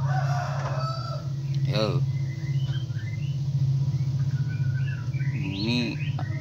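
A rooster crowing briefly at the start, about a second long, over a steady low hum, followed by scattered faint high bird chirps.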